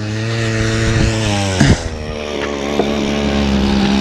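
An engine running steadily at an even pitch, with a single knock a little under two seconds in.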